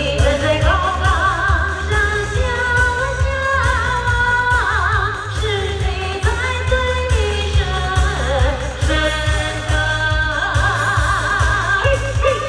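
A woman sings a slow Asian pop melody with heavy vibrato over a backing track with a strong, steady bass beat, played loud through a stage PA system.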